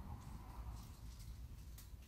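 Faint handling noise of wire snips being fitted against the spread end of a hammered aluminum wire piece, with a light tick near the end. There is no loud snip.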